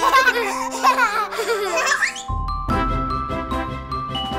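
A toddler giggling and laughing over light background music for about the first two seconds; then the music carries on alone with a fuller bass.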